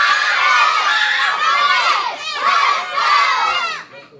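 A class of young children yelling together as loud as they can while throwing taekwondo front kicks. It is a loud, high-pitched group shout, their kihap, that breaks off briefly a little past halfway, starts again and dies away just before the end.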